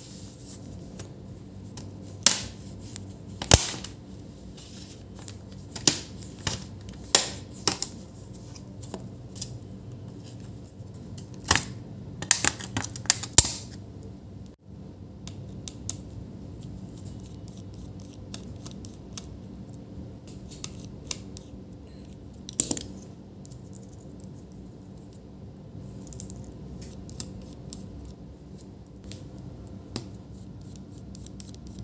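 Sharp plastic clicks and snaps as a pry tool works along the seam of a laptop's bottom cover and pops its clips loose, a dozen or so over the first half, several in quick succession just before the middle. After that only faint scratching and ticking as a precision screwdriver turns small screws.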